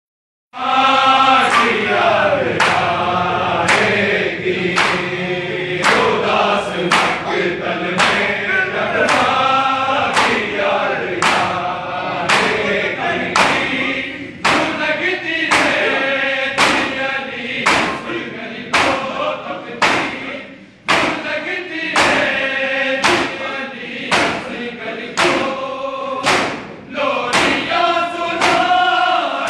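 A group of men chanting a noha in unison while beating their chests in matam. The chest-beats land as sharp, even thuds, roughly three every two seconds, under the chant.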